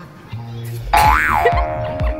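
Background music with a cartoon 'boing' sound effect about a second in: a loud springy tone that glides up in pitch and falls back down.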